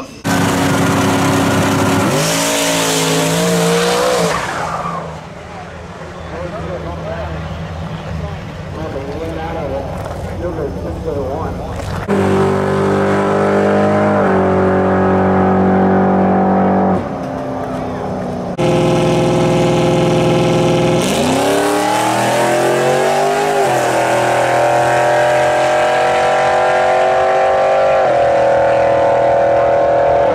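Turbocharged LS V8 drag car at full throttle. The engine note climbs in pitch for the first few seconds, then falls away, and comes back loud in two later stretches, the last one climbing and then holding, with abrupt breaks between stretches. This is the pass on which, by the owner's account, the TH400 transmission broke a shaft.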